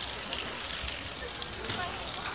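Outdoor crowd ambience of a busy pedestrian walkway: faint chatter of passers-by over steady noise, with a few light clicks of footsteps.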